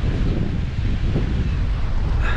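Wind buffeting the microphone in a steady low rumble, over the wash of sea surf churning in a narrow rocky gully.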